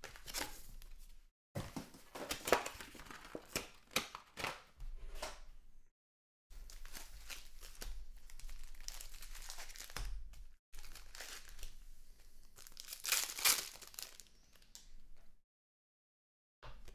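Foil trading-card pack wrappers crinkling and tearing as packs are handled and ripped open, in irregular crackly bursts. The sound cuts out completely a few times.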